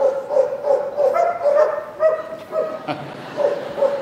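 Police dog barking repeatedly in short, pitched barks, about two to three a second.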